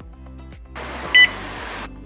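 Quiet background music, then about a second of steady electronic hiss with one short, loud high beep in the middle, from an electronic geophone leak detector listening through its ground microphone for leaks in a buried water main.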